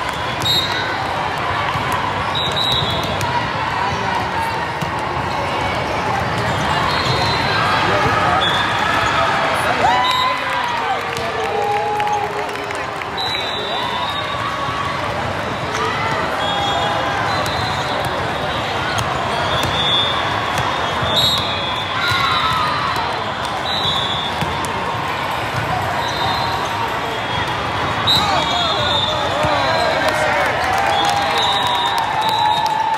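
Volleyball being struck and bouncing in a rally, with sharp hits scattered through a steady din of crowd chatter and player voices echoing in a large indoor hall.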